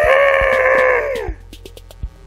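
A loud, long, high-pitched cry, held steady at one pitch for over a second and then trailing off about halfway through. Faint background music runs underneath.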